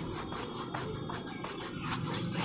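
A wide paintbrush rubbing linseed oil over a gesso-primed canvas in quick, repeated strokes, several a second.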